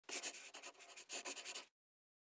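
A short scratching sound like a pen writing on paper, made of many quick strokes in two runs, the second starting about a second in, cutting off suddenly.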